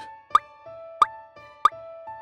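Three short plopping cartoon sound effects, each a quick upward-flicking blip, evenly spaced about two-thirds of a second apart, over soft background music with held notes.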